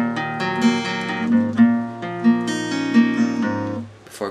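Acoustic guitar, tuned a half step down, picking out an E minor chord one note at a time, the strings ringing on over one another. It fades near the end.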